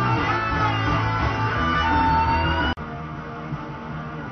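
Electric lead guitar for a black metal album, playing sustained notes with sliding pitch bends. It cuts off suddenly about three-quarters of the way through, leaving quieter room sound.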